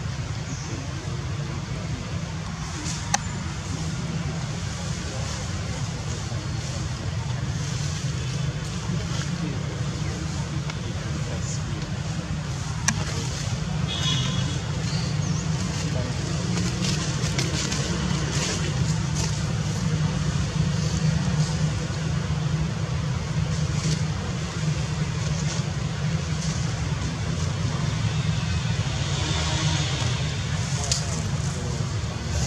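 Steady low outdoor rumble with indistinct distant voices, broken by a couple of faint sharp clicks.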